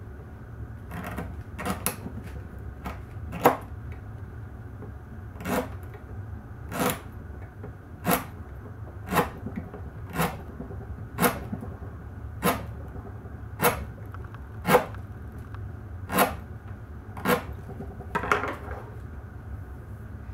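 Steel kitchen knife chopping through a green palm frond onto an end-grain wooden cutting board, each cut ending in a sharp knock of the blade on the wood. The cuts come irregularly at first, then settle to about one a second. These are the first cuts that break in the freshly sharpened edge.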